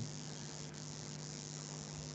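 Faint steady background hum with hiss, the recording's own noise floor, with a couple of very faint ticks.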